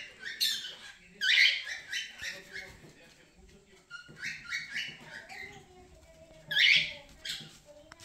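Pet parrots chirping: a run of short high chirps, with louder calls about a second in and again near the end.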